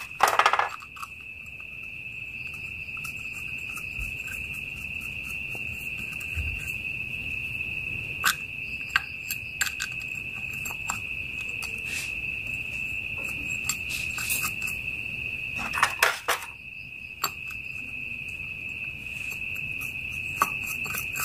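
A steady high-pitched cricket-like insect trill, with scattered light metallic clicks and taps from a motorcycle clutch pressure plate and its small bolts being fitted by hand. The sharpest clicks come just after the start and about three-quarters of the way in.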